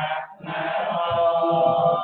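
Theravada Buddhist monks chanting, the voice settling into one long held note about half a second in.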